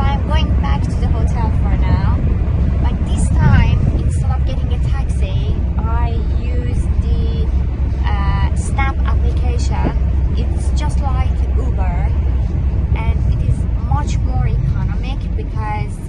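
A woman talking over the steady low rumble of a car's cabin while the car drives along.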